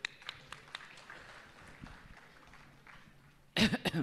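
Faint, scattered audience applause with a few separate claps at first, thinning out. A short burst of laughter comes near the end.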